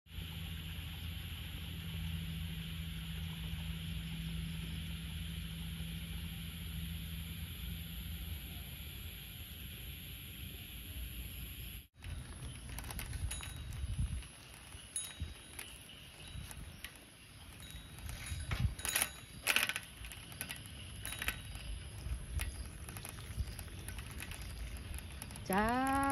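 Steady outdoor evening ambience with a high-pitched drone, cut off abruptly about halfway through. Then a bicycle is ridden over a wet road, its basket and frame rattling and clicking irregularly, with a cluster of sharper clacks a few seconds before the end.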